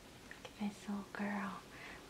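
A woman's voice, quiet, in three short soft sounds about half a second, one second and a second and a quarter in, the last a little longer.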